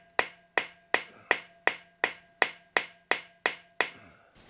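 Hammer striking a flat punch held against a broken-off exhaust stud in a motorcycle cylinder head: about eleven sharp metal taps at a steady pace of nearly three a second, with a faint ring between them. The blows flatten the stud's broken face so it can be centre-punched and drilled.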